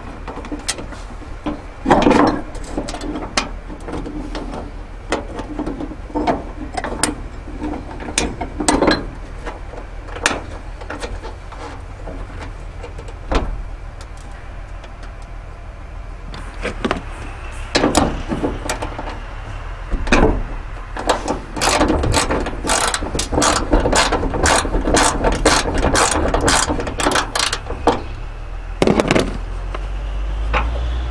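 Metal knocks and clunks as a steel ditch light bracket and its bolts are handled at the hood hinge, then a socket ratchet clicking rapidly for several seconds as the 12 mm bracket bolts are turned.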